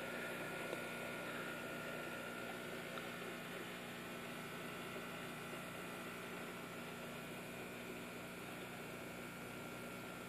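Aquarium equipment running: a steady low hum with a faint thin high whine over soft hiss.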